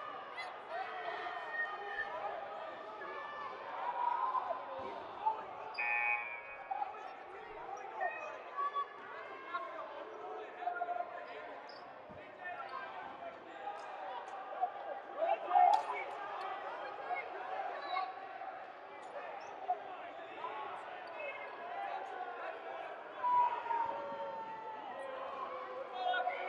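Many voices of players and spectators chatting in a gymnasium, with dodgeballs now and then bouncing on the hardwood court.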